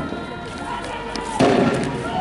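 A few sharp gunshot bangs, the loudest about one and a half seconds in, with people shouting.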